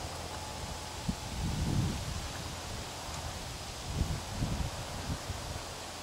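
Wind outdoors: an even hiss of wind through the leaves of the trees, with irregular low buffets of wind on the microphone, strongest a second or two in and again around four to five seconds in.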